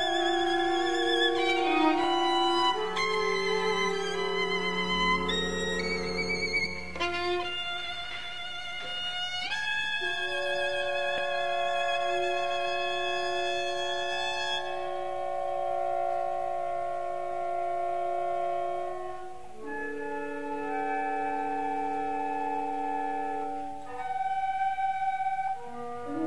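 Contemporary concerto for solo violin and fifteen-instrument ensemble: the violin holds high notes with vibrato over sustained ensemble chords. About fifteen seconds in the violin's bright upper line stops, leaving the ensemble's held chords, which shift to a new chord near twenty seconds.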